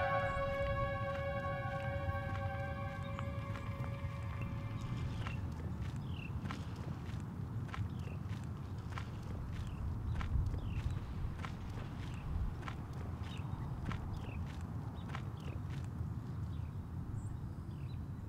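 A sustained music chord fades out over the first few seconds, giving way to footsteps on a gravel road at a steady walking pace, over a low steady outdoor rumble.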